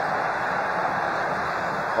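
Steady crowd noise of a packed football stadium, an even roar heard through an old TV match broadcast.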